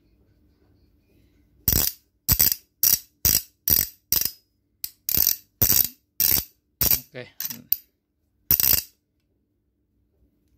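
Double-ended 22/24 mm ratchet ring wrench with a tapered rat-tail handle, its ratchet clicking as the head is turned back and forth by hand. About fourteen short bursts of rapid clicks come roughly two a second, starting about two seconds in.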